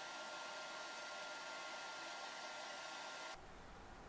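Hair dryer running steadily and faintly, a smooth rush of air with a thin high whine over it, cutting off suddenly near the end.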